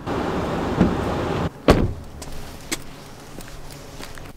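A car door shutting with one sharp, loud thump about one and a half seconds in, after a stretch of rustling noise, followed by a few faint footsteps on asphalt.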